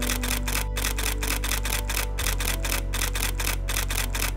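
Camera shutter firing in a rapid, evenly paced continuous burst, clicking over and over at several frames a second: high-speed burst shooting.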